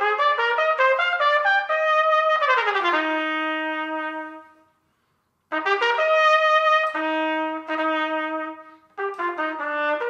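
Solo trumpet playing a simple exercise with classical articulation: clearly and evenly tongued notes climbing step by step, then a quick run down to a held low note. After a pause of under a second a second phrase begins, with another held note and a short break near the end.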